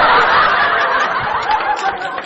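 Many people laughing together, a dense burst of group laughter typical of a comedy laugh track, slightly easing off towards the end.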